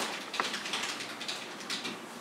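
Faint, irregular clicking of computer keyboard typing, a few keystrokes a second.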